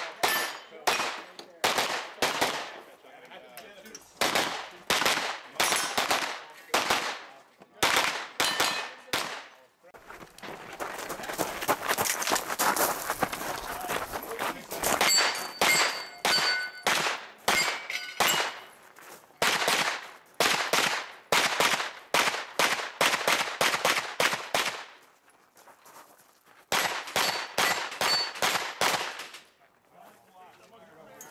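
Pistol-caliber carbine fired shot after shot through a timed stage, mostly one or two shots a second, with a dense fast stretch about a third of the way in and a brief pause before a final string near the end. Some hits bring a short metallic ring from steel targets.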